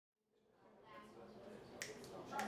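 Sound fading in from silence to a faint murmur of voices, then a single sharp finger snap near the end. It is the first of evenly spaced snaps counting off the tempo before the band comes in.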